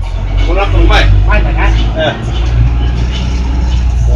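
Steady low engine and road rumble heard from inside a moving city bus, with a person's voice over it in the first half.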